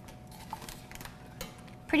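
A wire whisk stirring cheese fondue in a stainless-steel Cuisinart fondue pot, giving a few light clicks and scrapes of metal on metal.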